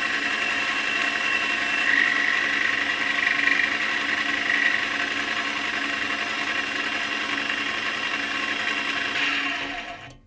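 Metal lathe turning a stainless steel bar while a 2 mm end mill, used as a tiny boring bar, cuts inside a small bore: a steady machine hum with a high cutting whine, strongest a few seconds in. The sound fades out near the end as the cutter comes out of the hole.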